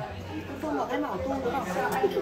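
Voices only: soft talking and chatter from several people in a room.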